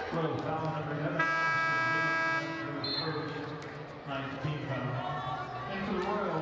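Basketball arena scoreboard horn sounding once, about a second in, a steady tone lasting just over a second, over the murmur of the gym crowd.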